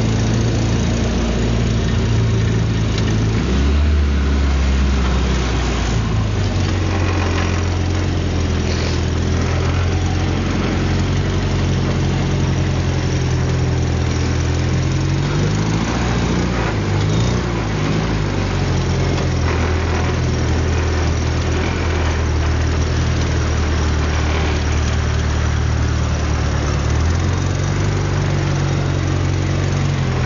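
Suzuki Samurai 4x4 engine running as it drives through snow. Its pitch steps down and up several times with the throttle, and the revs rise and fall briefly about halfway through.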